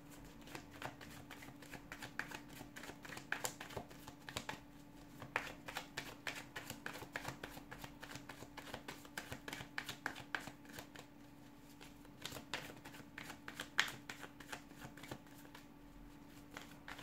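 A tarot deck being shuffled by hand: a steady run of soft, irregular card clicks and flutters, with a faint steady hum underneath.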